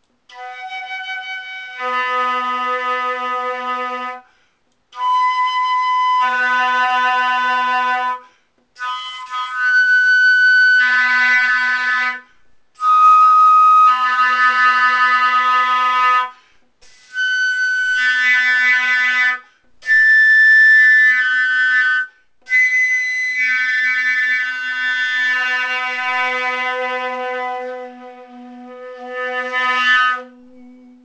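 A sterling-silver flute fingered on low B plays up and down the notes of that note's harmonic series, while the player softly sings low B into the flute (throat tuning). It comes as seven phrases of a few seconds each, split by short breath pauses. Each phrase opens on the flute alone, the sung note joins a moment later, and the last phrase is the longest.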